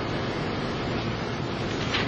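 Steady background hiss from room tone and microphone noise, with no distinct sound events.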